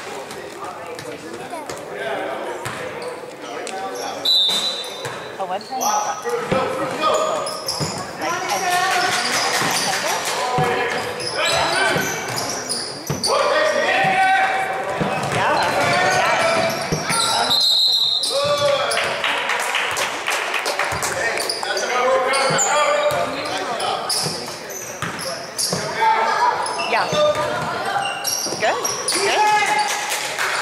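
A basketball bouncing on a hardwood gym floor during play, with many voices of players and spectators calling out in the echoing hall. Two brief high-pitched tones come through, about four seconds in and again near eighteen seconds.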